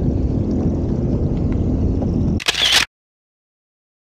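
Jet ski engine running at low speed, a steady low rumble mixed with water and wind noise. About two and a half seconds in there is a short loud rush of noise, and then the sound cuts off suddenly.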